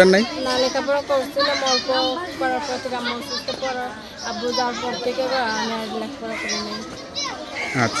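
A young woman's voice speaking in Bengali, answering a question in a higher-pitched voice.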